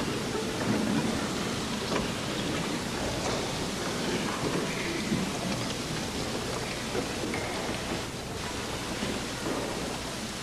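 Concert hall between movements with no music playing: a steady hiss of hall and recording noise, with faint scattered rustles and small sounds from the audience and orchestra.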